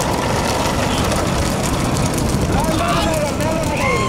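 Dense engine and road noise from a pack of motorcycles running close behind racing bullock carts. Men shout over it from about two and a half seconds in.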